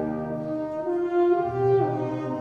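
Concert band playing a slow hymn-like passage, brass holding long sustained chords; a low bass note comes in about a second and a half in.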